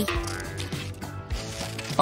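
Scissors snipping through a sheet of paper, with soft background music.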